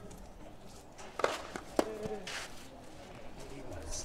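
Tennis ball struck by rackets: two sharp hits about half a second apart, as a point gets under way.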